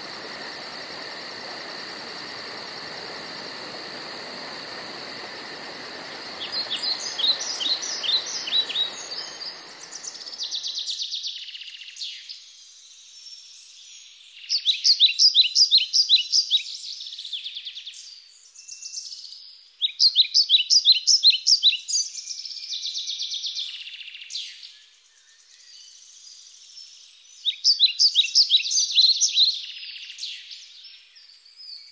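A songbird singing short phrases of rapid, falling chirps, repeated every few seconds. For the first ten seconds a steady hiss with high, steady tones runs under it, then stops abruptly.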